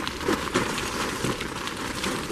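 Footsteps on a wet, slushy sidewalk, a faint scuff about every half second over a steady outdoor hiss.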